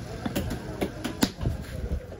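A large knife chopping through trevally pieces on a wooden log block, four sharp chops about half a second apart, the third the loudest.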